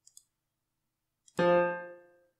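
A single piano note, an F, played back by Finale notation software as it is entered into the score. It starts suddenly about a second and a half in and dies away over under a second, after a couple of faint mouse clicks at the start.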